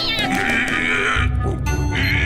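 Cartoon background music with a bear character's wordless vocal sounds over it, a wavering, pitched mumble in the first second. A heavy bass line joins the music just past the middle.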